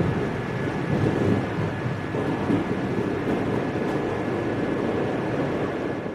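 Steady rumble and hiss of a moving vehicle heard from inside, with a faint steady high tone running through it.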